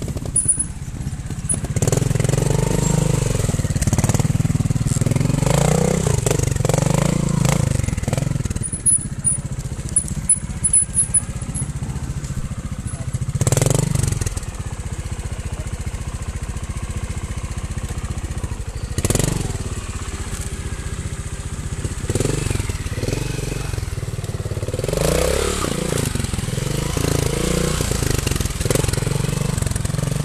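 Trials motorcycle engine running at low revs and blipped repeatedly in short bursts of throttle as the bike picks its way over rocks and a log, with a few sharp spikes of sound along the way.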